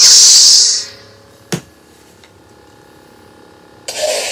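Lightsaber sound board playing its ignition effect through the hilt's speaker: a loud hissing surge under a second long that settles into a faint steady electric hum. There is a single click about a second and a half in, and the second saber's ignition surge starts at the very end.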